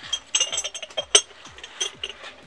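Ceramic mugs and lids clinking against each other as they are handled on a shelf: several short, ringing clinks, the loudest a little after a second in.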